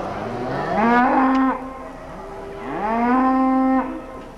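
Texas Longhorn cattle mooing twice: two long calls, each rising in pitch and then holding steady.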